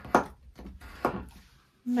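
Two brief, sharp sounds about a second apart from a bone folder scoring paper along a metal ruler on a cutting mat.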